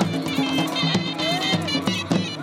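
Shehnai and dhol playing Punjabi folk music for a horse dance: a reedy, nasal wind melody over a steady, driving drum beat.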